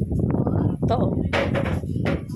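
Handling noise on a phone's microphone: loud, crackling low rubbing and knocking as the phone is moved about by hand.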